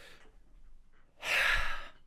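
A woman sighs out into a close microphone, a breathy exhale about a second in that lasts under a second, preceded by a faint breath. It is a sigh of relief at having made it to the end.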